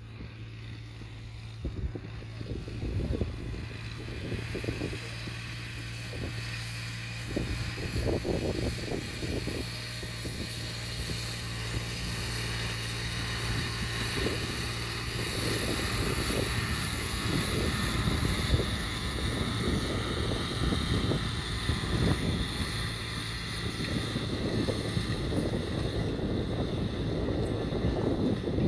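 New Holland tractor's diesel engine running steadily under load as it pulls a cultivator through dry soil, with gusts of wind buffeting the microphone.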